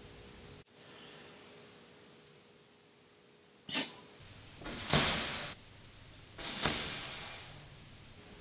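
Three sharp puffs of breath blown through a long thin pipe, used as a blowgun to shoot pieces of straw into a tomato. The first comes a little over three and a half seconds in, and the other two follow about a second and a half apart, each trailing off in a hiss.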